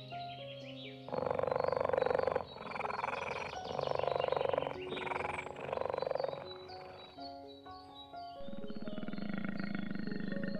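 Dubbed big-cat growl sound effects over background music: four loud growls of about a second each in the first half, then a lower, continuous growl starting near the end.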